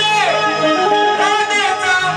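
Live shakti-tura folk music: a singer's voice gliding and holding notes over steady instrumental accompaniment, through a sound system.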